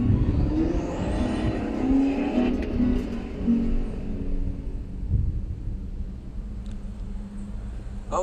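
Acoustic guitar picking the last few notes of a song, starting within the first few seconds and left to ring and fade away. A steady low rumble runs underneath.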